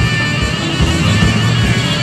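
A rock band playing live and loud: a dense, steady wall of sound with a heavy low drone underneath.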